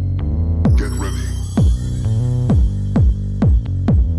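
Electronic music, an electro/breaks track, with a deep bass line and repeated booming kick drums that drop in pitch. A cymbal crash comes in just under a second in and fades away.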